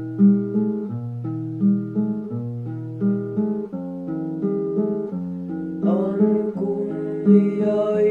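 Acoustic guitar playing a repeating picked pattern of notes. A singing voice comes in about six seconds in.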